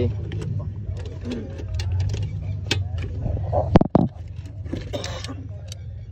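Rodeo's engine idling with a steady low hum while the oil catch can's clips are undone and its lid lifted off, giving clicks and metal knocks, with one loud sharp knock about four seconds in. The engine is breathing pretty heavy, and the can is full of dark oil.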